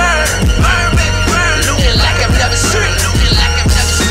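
Hip hop track playing: a beat with repeated deep bass hits that drop in pitch, with rapped vocals over it.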